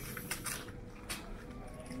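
Quiet background with a faint steady hum and a few soft, short clicks and rustles of movement.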